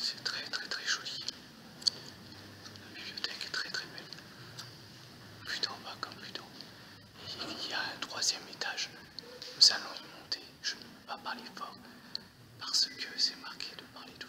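People whispering in short bursts with pauses between, along with a few faint clicks.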